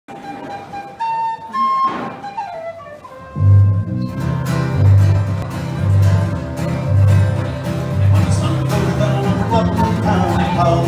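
Live Irish pub band music starting a song. A lone melody line opens, and about three and a half seconds in the band joins with acoustic guitar and bass guitar on a steady beat.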